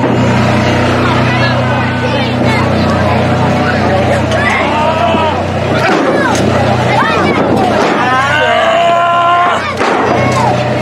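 Shouting and yelling voices from an outdoor wrestling bout, over a steady low hum. A sharp thump comes about six seconds in.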